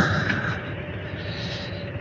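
Harley-Davidson Road Glide ST's V-twin engine running steadily at low road speed.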